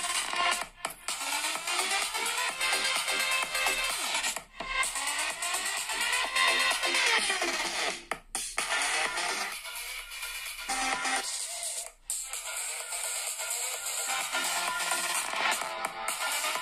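Electronic dance music played through the Meizu 16s Pro smartphone's dual stereo speakers as a speaker sound test, thin with little bass. The music dips briefly several times.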